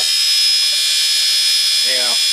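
Brushed DC motor of a home-built motor-generator rig running at a constant speed: a steady high-pitched whine over a buzz, with no change in pitch.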